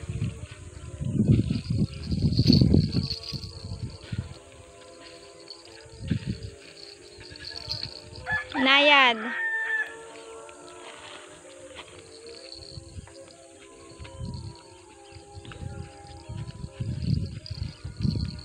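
A rooster crows once, a single call of about a second, midway through. Low rumbling thuds come and go around it, loudest near the start.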